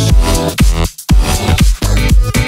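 French electro dance track with a pounding electronic beat, cutting out for a split second about a second in before the beat resumes.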